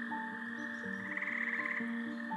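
Soft background music of slow, held notes, with a brief rapid pulsing trill about a second in.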